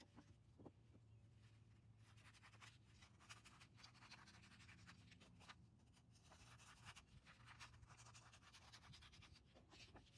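Faint crinkling and scratching of a sheet of sandpaper being folded and handled, then cut into strips with scissors, in many short scrapes.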